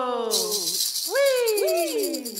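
Women's voices ending a Mohawk water song: a held sung note slides down in pitch and fades while a hand rattle is shaken, then a new vocal phrase rises and glides down near the end.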